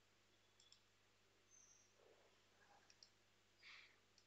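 Near silence with a few faint computer mouse clicks, one about half a second in and another near the three-second mark, over a faint steady low hum.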